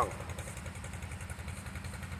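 A motor running steadily in the background, a low even hum at constant speed.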